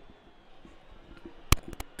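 A sharp click about a second and a half in, followed quickly by two lighter clicks, over faint steady background noise.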